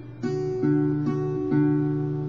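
Acoustic guitar finger-picked over a D chord: four notes about half a second apart, each ringing on. The first plucks the D and high E strings together with thumb and third finger, then single notes alternate between those two strings.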